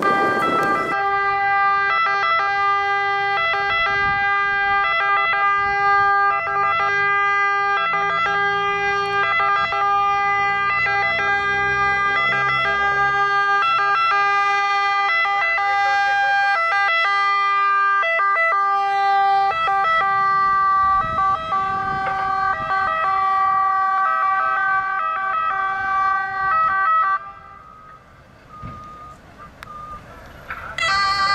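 Italian ambulance siren sounding in a steady two-tone pattern of held notes without any wail, cutting off about 27 seconds in.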